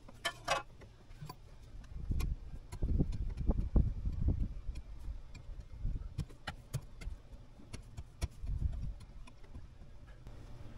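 Hand digging in a rocky trench: a shovel and stones give scattered clicks, scrapes and knocks. A run of heavier low thuds and rumbling comes from about two to five seconds in.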